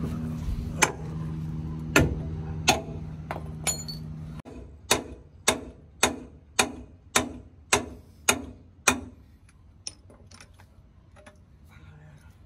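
Hammer blows on the steel of a truck's front suspension, knocking the lower control arm loose: a few scattered strikes, then a run of about eight evenly spaced ringing strikes, roughly two a second. Under the first strikes a steady low hum runs and stops abruptly about four seconds in.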